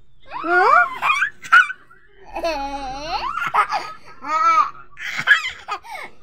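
A toddler laughing in a string of short, high-pitched bursts that rise and fall in pitch.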